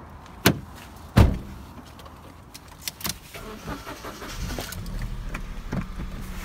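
Sharp thuds of a Toyota hatchback's door and body as the driver gets in, the loudest a little over a second in. From about four seconds in, the car's engine runs with a steady low rumble.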